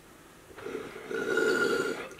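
Water in a glass bong bubbling as a hit is drawn through it. It starts about half a second in, grows louder with a faint whistle on top, and falls away near the end.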